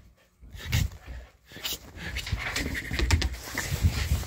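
A husky panting and moving about, with thumps and scattered knocks. From about halfway on comes a low rumbling handling noise as the camera is swung around.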